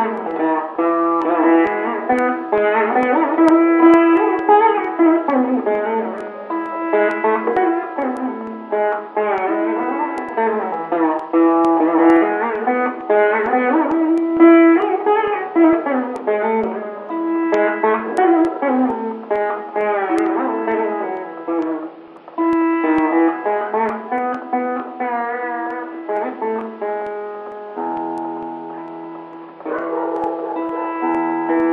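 Instrumental music: a plucked string instrument playing a quick melody with sliding notes over a steady drone note.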